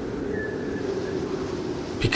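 Steady low rumble of wind in a snowstorm, with a faint high tone for a moment about half a second in.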